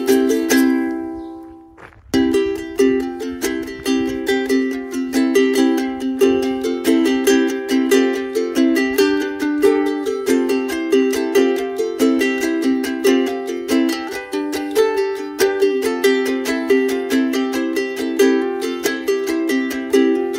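Background music of strummed plucked strings in a steady rhythm. A chord rings and fades out during the first two seconds, then the strumming starts again.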